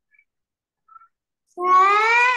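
A single drawn-out vocal call that rises in pitch, about a second long, starting past the middle.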